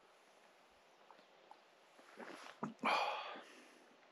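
Still, almost silent air for about two seconds. Then a man drinking from a collapsible cup makes a few faint sips and a small click, followed by a short breath through the nose about three seconds in.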